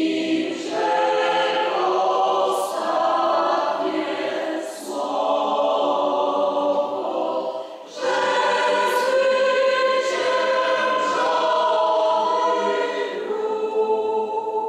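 Parish choir singing in long held phrases, with short breaks between phrases about two, five and eight seconds in.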